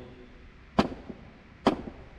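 Two sharp clacks of steel hand tools (pliers and locking pliers) knocking together in a tool-chest drawer as they are handled, about a second apart.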